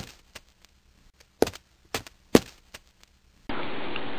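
A series of about six sharp wooden knocks at uneven intervals, the loudest right at the start and another just past halfway, with near silence between them.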